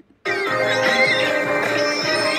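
A brief click, then music that starts abruptly about a quarter second in and carries on steadily.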